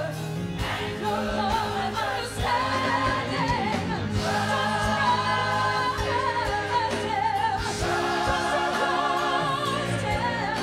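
Gospel song: a woman sings lead into a handheld microphone with a wavering vibrato, backed by a choir and a steady beat.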